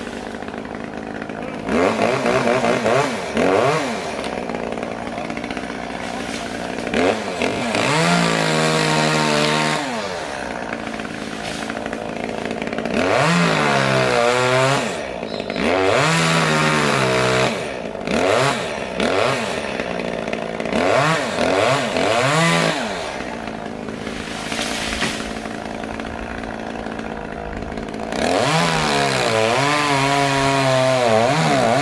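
Small handheld chainsaw revving up in repeated surges as it cuts through limbs of a gum tree, dropping back to a lower running speed between cuts.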